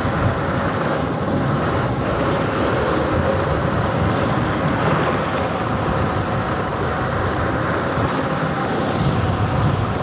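Steady wind rush on the microphone and tyre noise from an electric scooter cruising at about 30 mph in traffic, with a faint steady whine underneath.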